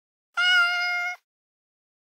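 A single cat meow, just under a second long and held at a nearly level pitch, set into complete silence as a title-card sound effect.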